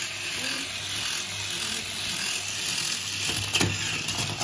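Toy tumbling robot's small electric motor and plastic gears whirring steadily as its arms work to push it up off its side, with a few sharper plastic clicks near the end.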